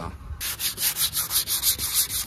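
Hand-sanding a fibreglass side skirt with 240-grit sandpaper: quick back-and-forth strokes, about four a second, starting about half a second in. It is a rough sand to key the surface for primer.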